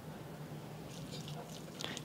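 Chopsticks stirring soy-and-rice-wine-marinated pork strips in a stainless steel bowl: faint wet squishing with light clicks, starting about a second in.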